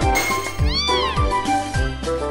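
A single cat meow sound effect, about half a second long, that rises and then falls in pitch, heard about halfway through over background music with a steady beat.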